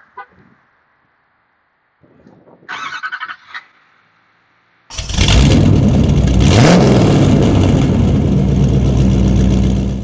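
Loud vehicle engine sound effect that cuts in about halfway through and runs steadily, with a rising rev partway in.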